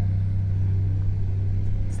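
Cat 305 E2 mini excavator's diesel engine running with a steady low hum, with no change in pitch.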